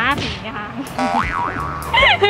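A cartoon 'boing' sound effect in the second half, its pitch bouncing up and down twice, following a woman's brief laugh, over background music.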